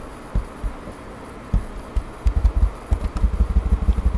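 Muffled thuds of typing on a computer keyboard, heard as a few scattered knocks and then a quick run of about eight to ten a second from about two seconds in.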